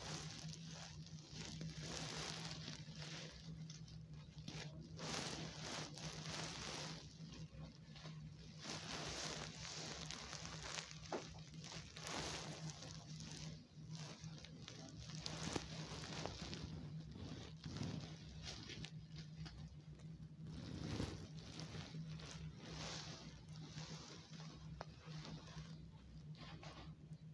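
Fabric rustling and rubbing close to a phone's microphone, in uneven waves with a few small clicks, over a steady low hum.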